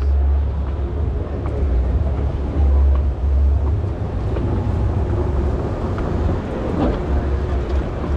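Escalator running, a steady low rumble under a diffuse hall noise, with a thin steady hum coming in about halfway.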